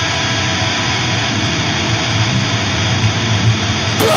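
A steady, drumless roar of distorted noise within a beatdown hardcore track, a held wall of sound between drummed passages.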